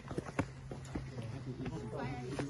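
Footsteps on concrete steps, irregular sharp taps and scuffs, with faint voices in the background.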